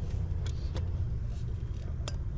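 A steady low rumble, with a few light clicks and taps as a large toy gorilla figure is grabbed and lifted by hand.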